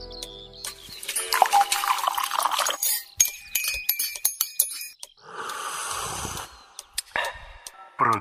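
Intro music and title sound effects: a held chord dies away in the first second, then a busy run of glittering chimes and clicks. A hissing whoosh follows from about five to six and a half seconds in, with a few more chimes near the end.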